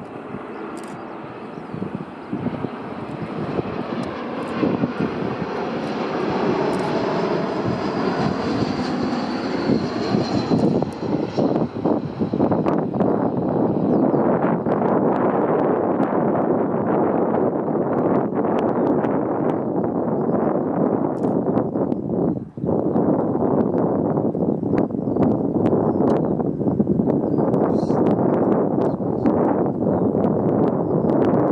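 Airbus A321-231's IAE V2500 turbofan engines on final approach, a whine sliding down in pitch as the jet passes, then a louder, steady engine roar as it touches down and rolls out along the runway.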